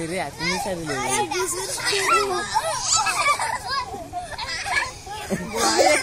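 A group of children shouting and chattering as they play, several high voices overlapping at once.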